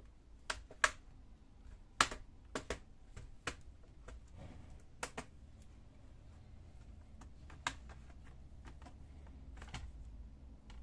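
Plastic snap clips of an ASUS X401 laptop's top case clicking loose as its edge is pried up with a plastic opening pick: about ten sharp clicks, most of them in the first five seconds.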